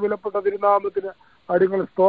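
Speech only: a person talking over a telephone conference line, with the thin, narrow sound of a phone call and a short pause about a second in.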